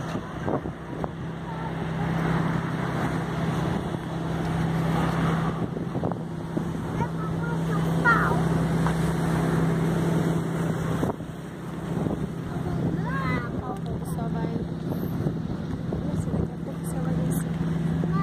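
A steady low motor drone with wind noise on the microphone, and voices of people nearby now and then.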